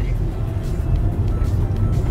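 Toyota Tarago minivan driving, heard from inside the cabin: a steady low engine and road rumble, with faint music over it.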